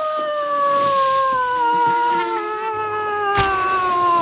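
A woman's voice holding one long, high wail that slowly falls in pitch, a vocal effect for a cartoon character. A single sharp knock is heard about three and a half seconds in.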